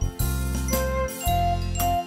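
Instrumental passage of a keyboard arrangement after the last sung line: single melody notes over a steady bass line and a drum beat of about two hits a second.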